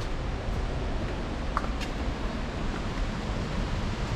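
Steady rushing roar of a waterfall: an even, unbroken noise, heaviest in the low end.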